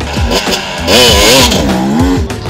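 Husqvarna dirt bike engine revving as the rider pulls away, its pitch swinging up and down, with the loudest burst about a second in.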